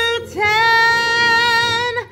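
A woman singing, holding a long steady note; just after the start it breaks off briefly, then scoops upward into a second long held note.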